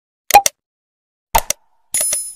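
Mouse-click sound effects from an animated subscribe-button graphic: two sharp double clicks about a second apart, then a high bell-like chime starting just at the end.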